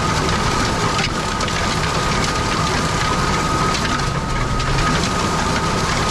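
Tractor running steadily under load, heard from inside the cab as it pulls a disc harrow through stubble at about 15 km/h. A constant high whine sits over the engine and the rumble of the harrow working the soil.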